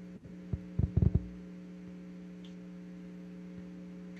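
Steady electrical hum, with a few dull low thumps about a second in.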